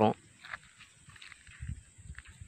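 A man's voice breaks off at the very start, then faint handling noise and rustling as a handheld phone brushes through sesame plants, with a few soft low thuds, the clearest about halfway through.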